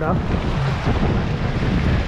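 Strong wind buffeting the microphone in a steady low rush, over choppy lake water splashing against a wooden pier.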